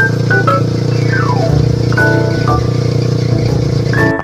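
Background music: a melody of short stepped notes, with a descending run about a second in, over a steady low drone.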